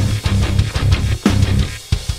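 Heavy nu-metal band recording: distorted electric guitar and bass chugging a stop-start riff, which drops out for a moment near the end before slamming back in.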